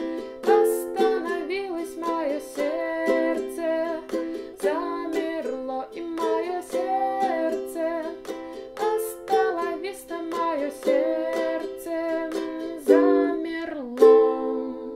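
Ukulele strummed in a down, down, up, up, down, up pattern through C, F, G and Am chords, with a loud strum near the end.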